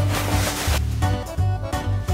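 Background music with a strong, pulsing bass beat under sustained melodic notes.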